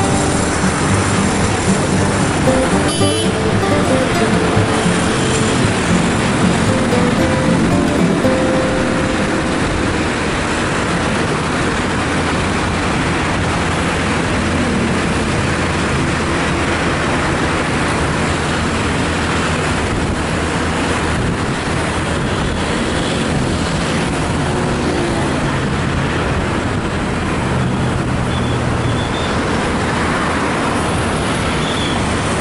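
Steady traffic and road noise heard from a moving vehicle: a continuous rush of tyres and engines on a busy city road. Music plays over the first several seconds and stops about eight seconds in.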